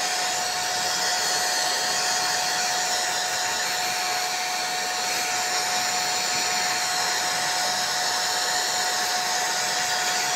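Electric hair dryer blowing steadily, a constant rush of air with a steady mid-pitched whine, aimed at a wet ceramic photo plaque to dry the water off the applied photo.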